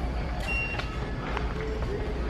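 Steady low hum of a large store's interior, with a brief high beep about half a second in and faint background voices.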